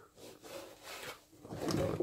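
Hand rubbing over the scuffed underside of a car's front bumper splitter, a few soft, irregular scrapes.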